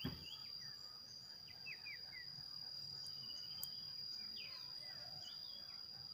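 Faint outdoor ambience: an insect's steady high-pitched trill, with scattered short bird chirps.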